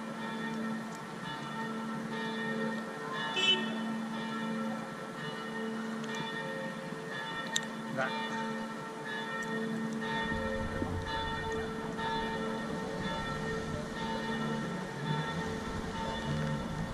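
Church bells ringing steadily, their tones overlapping and sustained, with a few faint clicks of handling and a low rumble that joins about ten seconds in.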